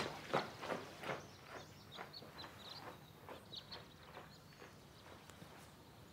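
Footsteps walking briskly away, about two to three steps a second, growing steadily fainter until they fade out.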